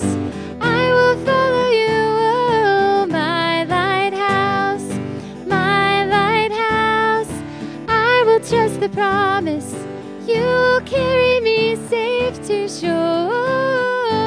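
A woman singing a worship song into a microphone, accompanied by an acoustic guitar.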